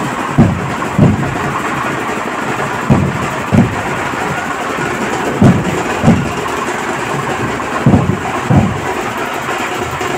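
Large dhol drums in a procession beat out a slow rhythm: two heavy booming strokes about two-thirds of a second apart, repeating roughly every two and a half seconds. They sound over a steady loud din.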